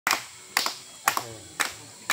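Onlookers clapping in a slow, steady rhythm: about two claps a second, four claps in all.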